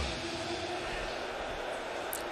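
Steady ballpark background noise of a game broadcast, an even wash of sound with no distinct events.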